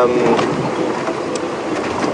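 Open safari vehicle driving slowly over a rough dirt track: steady engine and driving noise with no sudden events.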